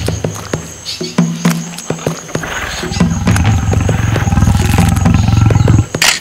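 Low, pulsing growl of a large animal, dubbed as a crocodile's. It comes in short bursts at first, then swells and holds loud for the last three seconds before cutting off, over scattered sharp clicks.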